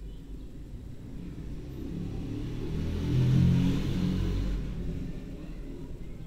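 A low rumble that swells to its loudest a little past the middle and then fades away again.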